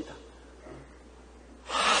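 A preacher's sharp intake of breath into the pulpit microphone near the end, taken before his next sentence, after a short quiet pause.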